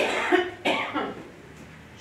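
A person coughing twice in quick succession, the second cough about two-thirds of a second after the first.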